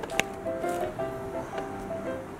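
Background music: a light tune of held notes stepping from one pitch to the next, with a single short click a moment in.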